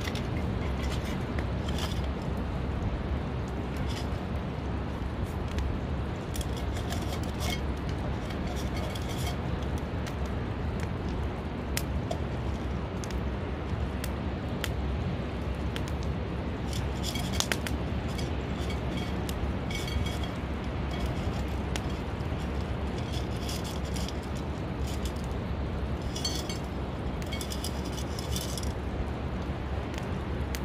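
Small shells, cooked winkles and limpets, clinking and rattling against a stainless steel cup and a rock in scattered bursts, over a steady outdoor rumble.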